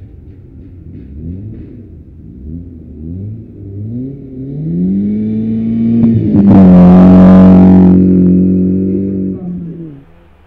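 BMW Compact rally car accelerating hard through the gears, its engine note climbing in repeated sweeps with each shift, then held at high revs. It is loudest as it passes close, about six to seven seconds in, with a rush of tyre and snow noise and a slight drop in pitch, before fading away near the end.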